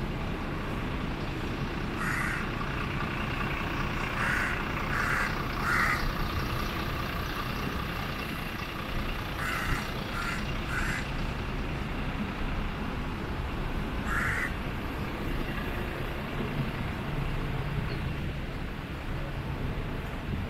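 A crow cawing in short calls: one, then a group of three, another group of three, and a single call. Under it runs a steady low hum of distant traffic.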